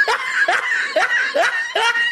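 A person laughing in a run of short, rhythmic 'ha' bursts, about two to three a second.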